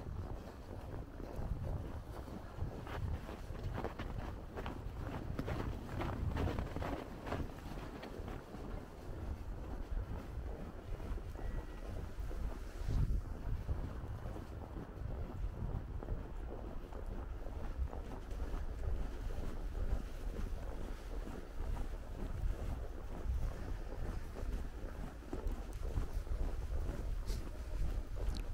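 Wind buffeting the camera microphone, a steady low rumble. Over the first several seconds there is a run of crunching footsteps on packed snow, about two a second.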